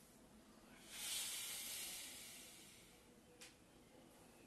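A long, forceful breath out through the mouth, starting about a second in and fading away over the next two seconds: the exhale timed to the effort of curling up in a Pilates oblique crunch. A faint tick near the end.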